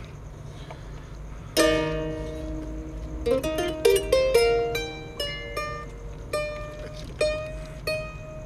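Kora being plucked. A full chord rings out about a second and a half in, then a quick run of single ringing notes that slows to single notes about a second apart near the end.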